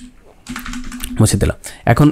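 Computer keyboard keys pressed several times in quick succession while a spreadsheet cell is cleared, followed by brief fragments of a man's voice.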